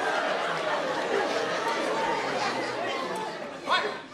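Crowd hubbub: many people talking at once in a steady mass of overlapping voices, with one voice standing out briefly near the end.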